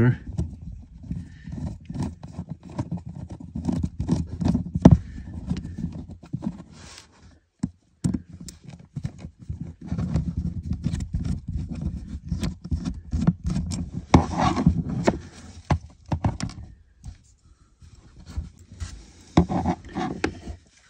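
Close handling noise from a plastic N-scale trolley model being unscrewed with a precision screwdriver: a dense run of rubbing, scraping and small clicks of the driver and fingers on the body. It stops briefly twice, about halfway through and again near the end.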